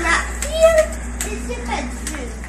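A young child's brief wordless vocal sounds, with a few light clicks, over a steady low hum.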